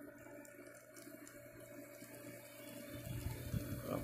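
Water trickling and swirling as the pump's suction draws it into an Intex floating pool skimmer, over a steady low hum. A low rumble grows in the last second.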